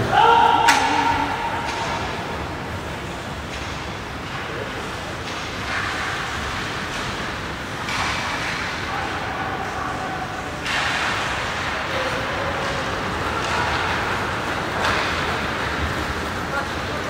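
Ice hockey game heard from behind the rink glass: a steady wash of play on the ice with a few sharp clacks of stick and puck, and spectators calling out, loudest in a shout about a second long right at the start.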